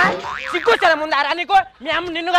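Cartoon-style comedy sound effect: a sudden hit at the start, followed by a wavering, voice-like wail.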